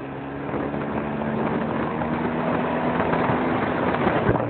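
Motorcycle engine running steadily while riding along at road speed, getting louder over the first second or so, with wind noise on the microphone.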